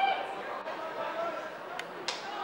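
Indistinct voices of players and sideline teammates calling out across an open field, with one short sharp click near the end.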